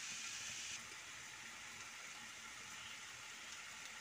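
Faint, steady sizzle of diced chicken and capsicum frying in a pan; the hiss drops a little about a second in.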